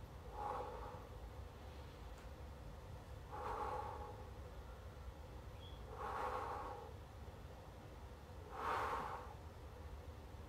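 A man breathing hard from effort while holding a pike position, with four heavy breaths about two and a half seconds apart.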